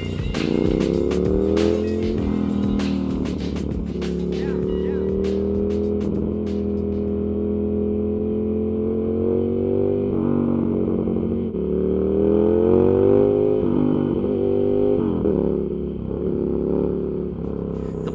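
Motorcycle engine under way, its pitch climbing as it revs up through each gear and dropping at each shift, several times over. Sharp crackles sound over it in the first few seconds.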